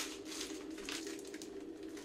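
A steady low hum under a faint hiss, with light rustling and a couple of soft ticks.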